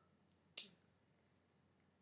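Near silence, broken by a single short click about half a second in.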